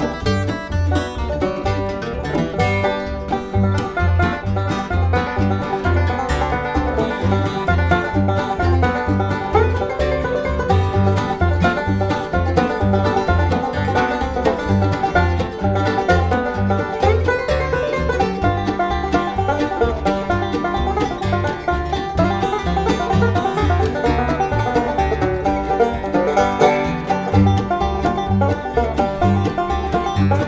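Bluegrass band playing an instrumental tune at a brisk pace: five-string banjo, mandolin, Martin D-18 acoustic guitar and upright bass, with the bass plucking a steady, even beat under the busy picking.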